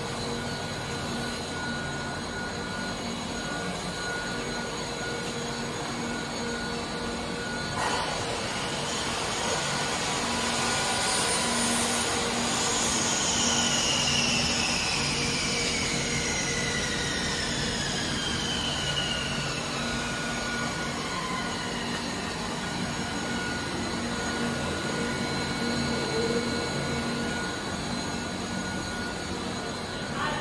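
Machinery of a can-making production line running: a steady mechanical drone with constant hum tones. There is one knock about eight seconds in, and partway through several high tones slide slowly downward for several seconds.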